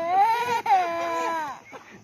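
A small boy crying hard in long, high wails. The last wail falls in pitch and dies away about a second and a half in.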